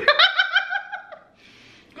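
A person laughing in a high-pitched run of short pulses that fades out after about a second.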